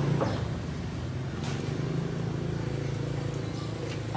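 Honda SH Mode scooter's small single-cylinder engine idling with a steady, low, even hum.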